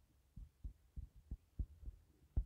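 Faint, soft low knocks, about six in two seconds, from a stylus tapping and stroking on a drawing tablet while handwriting is written.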